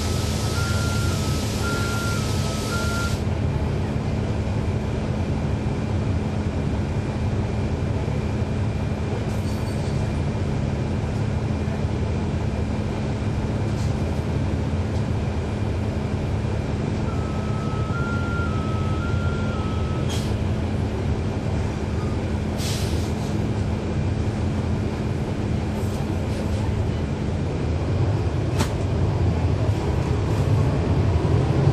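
A 2012 NABI 40-ft transit bus's Cummins ISL9 diesel engine running steadily, with a low hum that stops near the end as the engine picks up. A short stepped electronic chime sounds twice, the first together with a hiss of air lasting about three seconds, and a few sharp clicks come in the second half.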